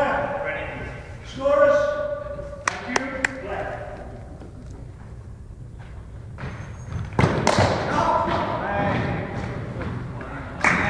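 Two sharp knocks about half a second apart, about three seconds in, echoing in a large gym hall among players' voices. The voices get louder from about seven seconds in.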